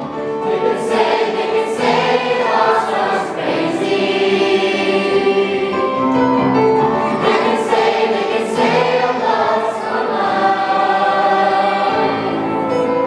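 A mixed choir of young men and women singing a song together in chorus, with sustained notes throughout.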